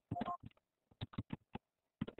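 A quick run of short clicks and blips, several a second, with a couple of brief electronic tones, heard over a web-conference audio line.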